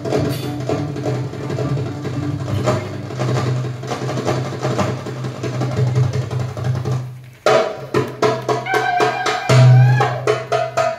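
Live Arabic music: violin and qanun over a hand drum beating a rhythm. About seven seconds in the music drops out for a moment. Then the drum comes back in with sharp, separate strokes.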